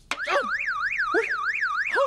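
Car alarm siren warbling quickly up and down, about four sweeps a second, starting just after the beginning. A male voice exclaims briefly over it.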